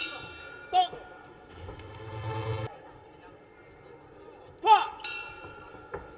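Ring bell struck twice, about five seconds apart. Each strike rings out with a bright metallic tone and then fades.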